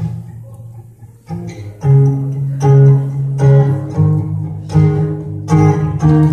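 Acoustic guitar playing a song's intro: a struck chord rings and fades, a lighter one follows, and from about two seconds in a steady run of strummed chords begins.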